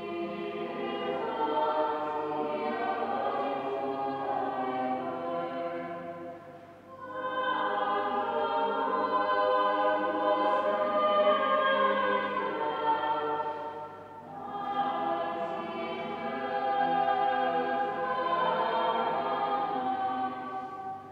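A choir singing sustained chords in long phrases, with brief breaks about seven seconds apart.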